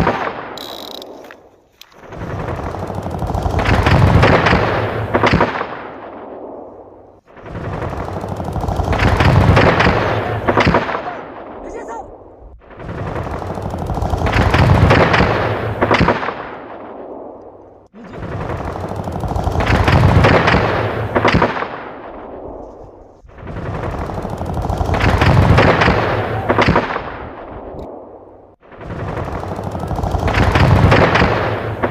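Dubbed-in rapid gunfire sound effect: a dense burst of shots that swells and fades, looped about every five and a half seconds, each repeat cutting off abruptly.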